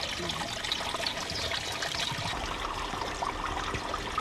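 Running water trickling steadily in a stone-lined garden pool.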